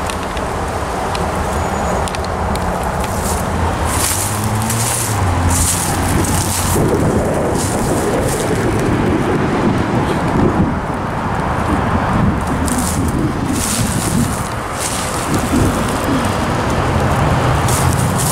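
Footsteps crunching through dry leaf litter in short runs, over a loud, steady rushing rumble of outdoor noise.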